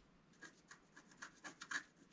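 Wooden scratch stylus scraping the black coating off a scratch-art sheet in a quick run of short strokes, starting about half a second in, the loudest near the end.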